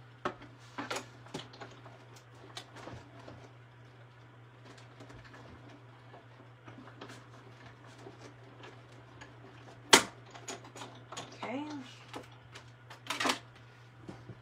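Hand-cranked Big Shot die-cutting and embossing machine rolling a 3D embossing folder through between two plates, a quiet run of irregular small clicks and creaks, ending in one sharp click about ten seconds in. A steady low hum lies under it, and a couple of short voice sounds come near the end.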